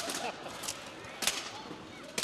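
Weapon strikes landing on steel armour and shield in full-contact armoured combat, with a polearm against sword and shield. Three sharp clashes: one right at the start, a fainter one about two-thirds of a second in, and the loudest about a second and a quarter in.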